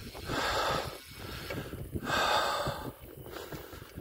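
A cyclist breathing hard while riding: two long, noisy exhalations about a second and a half apart, over a steady low rumble of the bike on a rough gravel track.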